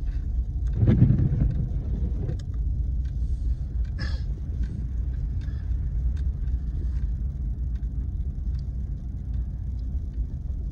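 Pickup truck heard from inside the cab while driving slowly on a snow-covered road: a steady low rumble of engine and tyre noise. There is a louder low thump about a second in and a brief click near four seconds.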